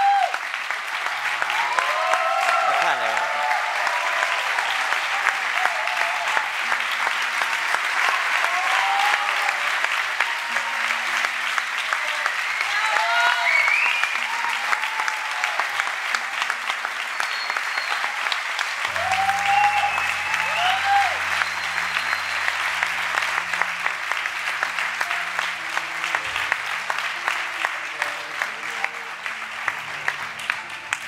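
Theatre audience giving a long, steady round of applause, with scattered whoops and cheers over it.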